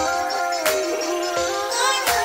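Electronic dance track playing on stage: sustained synthesized melody lines that slide in pitch, with a few light high percussive ticks and no bass or kick drum yet.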